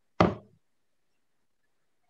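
A single sharp knock about a quarter second in, dying away within half a second with a brief low ring.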